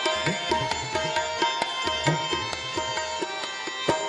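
Harmonium holding steady chords over regular tabla strokes, with the tabla's bass drum bending in pitch now and then. This is an instrumental passage of shabad kirtan with no voice.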